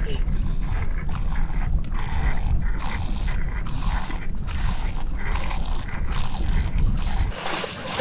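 Horses standing and stepping in a shallow, slush-filled icy river: water splashing and sloshing around their legs in repeated surges, over a steady low rumble that stops near the end.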